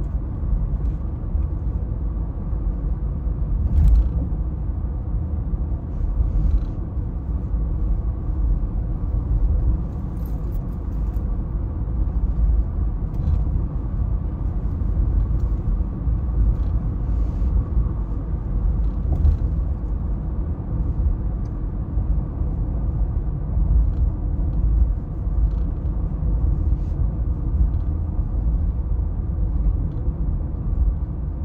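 Steady low rumble of road and engine noise inside a moving car's cabin, with a few faint ticks along the way.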